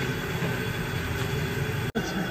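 Steady low roar of a high-pressure gas burner running under a large cooking kadai, with a faint steady whine above it. The sound drops out for an instant near the end.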